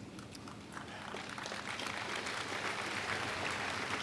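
A large congregation applauding, building up from about a second in and then holding steady.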